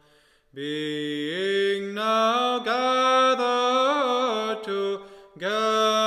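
Unaccompanied Orthodox church chant: a hymn sung in long, drawn-out notes that glide between pitches, broken by a short pause for breath near the start and another near the end.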